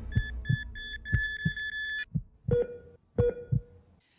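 Heartbeat sound effect: four double thumps, about one a second, with electronic beeps over it. A run of high beeps stops about two seconds in, then two short lower beeps follow, and it all fades out near the end.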